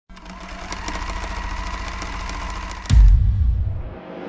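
Channel-intro sound design: a fast mechanical rattle with a steady buzzing tone, then a deep bass boom about three seconds in that dies away.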